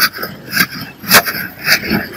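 Sugarcane being crushed between the rollers of a stainless-steel roller juicer. The sound repeats about twice a second.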